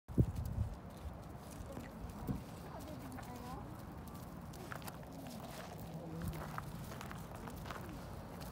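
Raccoon dogs moving about on gravel: scattered clicks and scuffs of paws on the stones, with a loud knock just at the start. Faint wavering voice-like sounds come and go in the middle.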